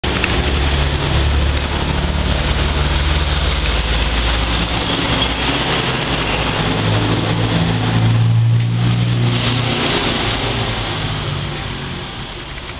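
A motor vehicle engine running with a steady low hum that shifts up in pitch for a few seconds past the middle, over constant outdoor background noise.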